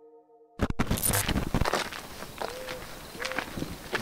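A sharp digital glitch crackle about half a second in, then people's footsteps through forest undergrowth.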